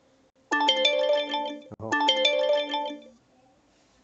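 A phone's melodic alert tone, a short ringtone-like phrase of several held notes played twice in a row, each about a second and a half long.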